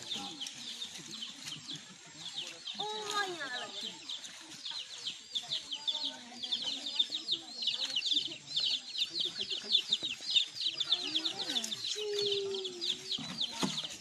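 Rapid high-pitched chirping calls from small animals, several a second, thickening about a third of the way in, over the scattered voices of people.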